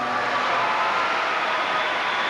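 Large arena crowd applauding, a steady even hiss of clapping, with a few faint held notes of the routine's music dying away beneath it.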